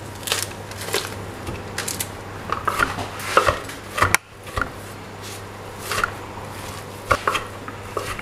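Chef's knife chopping cooked game-bird meat on a wooden chopping board: irregular knocks of the blade against the wood, over a low steady hum.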